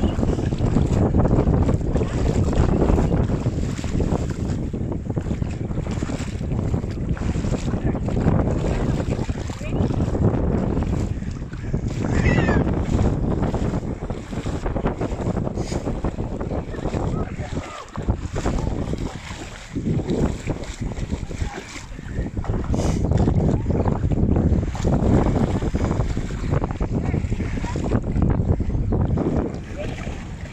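Wind buffeting the microphone, rising and falling, over the splashing of a German shepherd pawing and digging in shallow water.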